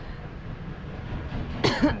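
Low, steady background noise, then near the end a man's short laugh breaks in.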